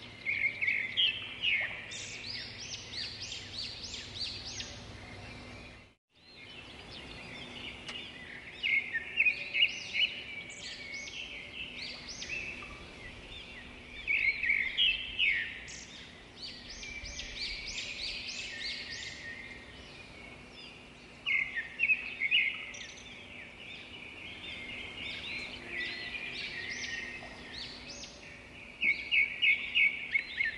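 Small birds chirping in quick bursts of short, high notes, over a faint steady outdoor background. The sound drops out for a moment about six seconds in.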